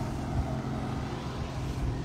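A motor vehicle's engine running with a steady low hum.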